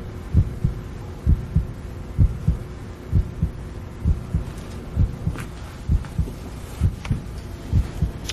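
A slow, steady heartbeat sound effect: a low double thump repeating a little faster than once a second, over a faint steady hum.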